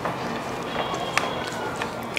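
A few sharp crackles of crisp, deep-fried singara pastry being broken open by hand, over a low background hiss.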